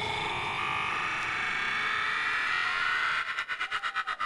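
Hardstyle DJ mix in a breakdown: the kick and bass drop out, leaving a sustained synth. From about three seconds in the synth is chopped into a rapid stutter.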